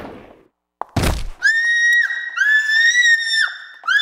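A sudden thud about a second in, then a woman screaming: high, steady-pitched held screams broken by short gaps, the middle one the longest.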